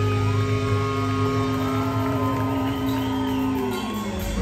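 Live reggae band playing: a strong held bass note under sustained tones, with several gliding tones that rise and fall in pitch; the bass note changes near the end.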